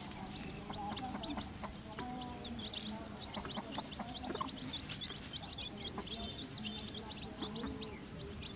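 Domestic chicks peeping in a busy chorus of short high chirps, thicker from about two and a half seconds in, with a hen's low clucks beneath.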